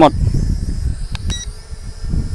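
Strong gusty wind buffeting the microphone, with the faint high whine of a small quadcopter drone's propellers overhead. A short electronic beep just over a second in.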